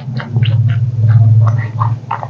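Loud, wet chewing and lip-smacking of a mouthful of food close to a clip-on microphone, a run of quick clicks over a low steady hum.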